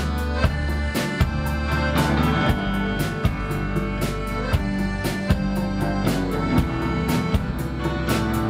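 Live band playing an instrumental passage with accordion, guitar and drum kit: a steady drum beat over sustained low notes, no singing.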